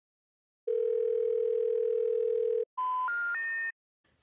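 Telephone network tones: a steady single tone for about two seconds, then after a short break three short tones stepping up in pitch. The three rising tones are the special information tone that comes before a 'number not in service' recording.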